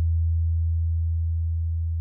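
A single steady deep bass tone, the held sub-bass of a DJ remix track, with no other instruments, slowly getting quieter.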